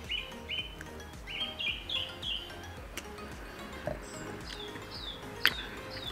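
A bird chirping outdoors in a quick series of short, repeated notes, then a few higher, downward-sliding calls midway. Near the end comes a sharp tap, like a glass being set down on a wooden table.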